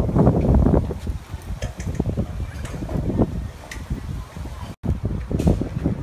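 Wind buffeting a handheld camera's microphone outdoors: an uneven low rumble, louder in the first second, broken by a brief dropout just before five seconds in.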